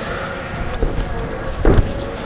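Tornado kick landed on both feet: a brief swish of the spinning kick, then a heavy thud of bare feet landing on the padded gym floor about a second and a half in.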